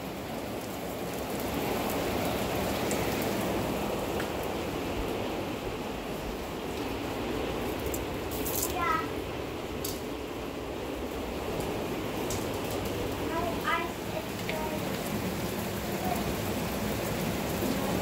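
Steady hiss of rain and small hail falling outside, with a few sharp ticks around the middle.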